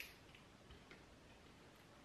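Near silence with faint handling noise of camera gear: one sharp plastic click at the start, then a couple of light ticks as cables and a charger are picked up.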